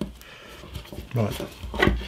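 Fingers peeling the backing off double-sided tape and pressing a paper template down onto a thin wooden veneer strip: faint paper rustling and rubbing, with a small click at the start and a soft tap near the end.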